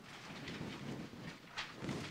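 Quiet room tone with a few faint, short clicks or shuffles near the end.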